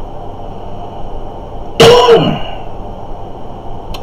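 A man gives one short, loud cough to clear his throat about two seconds in.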